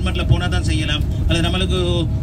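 A man talking over the steady low rumble of a moving road vehicle, heard from inside the cabin.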